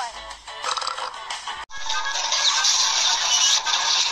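Cartoon soundtrack music heard through a TV. An abrupt edit about one and a half seconds in switches to a denser, hissier stretch of music and sound effects.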